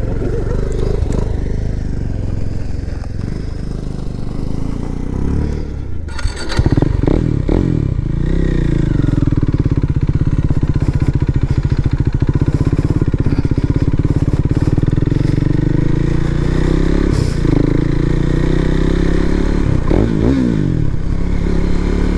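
KTM 390 Duke's single-cylinder engine running as the motorcycle is ridden at low speed, getting louder about six seconds in and then holding a steady note with small rises and falls in revs.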